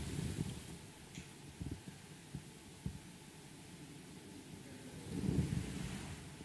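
Quiet room tone with a few faint, soft knocks and a low rustle that swells briefly near the end, from a priest's handling at the altar and the movement of his vestments as he raises and lowers the host in silence.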